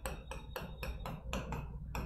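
Marker pen tapping on a whiteboard as short dashed arrows are drawn: a quick run of small ticks, about five or six a second.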